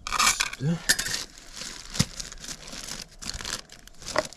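Plastic bag of dry hydraulic-plug cement powder crinkling and rustling as it is handled and opened, with one sharp click about halfway.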